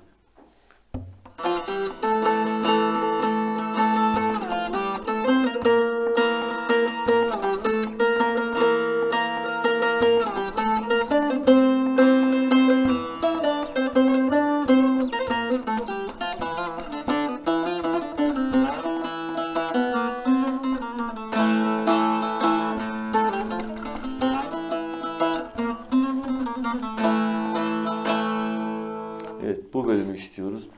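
Long-necked bağlama (uzun sap saz), tuned B–E–A, played with a plectrum: a melody of quick picked notes over ringing strings. It starts about a second in and stops just before the end.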